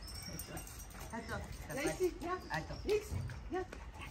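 A dog giving a quick run of short, high whines and yips, about eight in under three seconds, starting about a second in.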